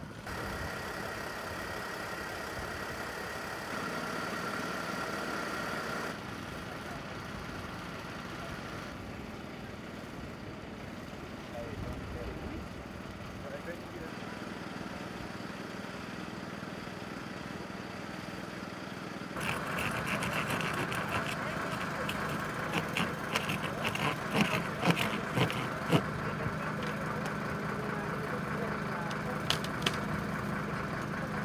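Steady engine hum from idling emergency vehicles and an engine-driven hydraulic rescue pump, with people's voices. In the last third it gets louder, with a run of sharp cracks and snaps as firefighters work on the wrecked car.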